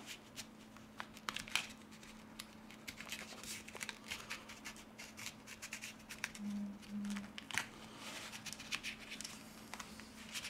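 Plastic opening card scraping and ticking as it is worked along the edge of a phone's glass back cover, cutting through the adhesive: faint, irregular scratches over a steady low hum. Two short low tones sound a little past the middle.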